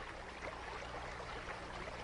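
Faint, steady trickle of stream water over stones, with a low steady hum underneath.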